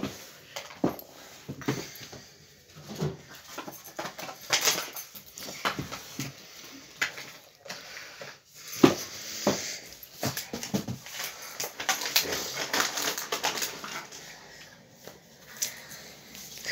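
A small plastic toy seashell being handled and pried open: scattered clicks, scrapes and rustles, with a few short squeaky creaks about halfway through.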